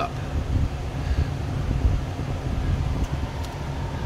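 Steady low rumble of background machinery noise, with two faint ticks about three seconds in.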